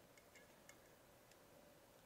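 Near silence: room tone with a few faint, small clicks.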